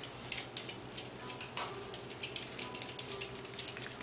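A chihuahua's claws clicking on a hardwood floor as it walks and noses around, in quick, irregular ticks.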